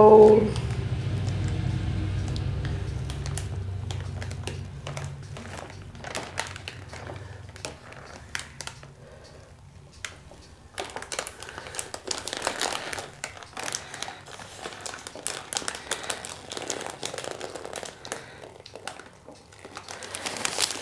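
Plastic zip-lock bag filled with wet acrylic paint crinkling and crackling as gloved hands press and knead it, in many short irregular crackles that grow busier in the second half.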